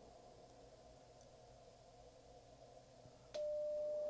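Icom IC-7300 transceiver in CW mode: faint receiver hiss, then near the end a single steady sidetone beep of about a second as the transmitter is keyed to read the antenna's SWR on 20 meters.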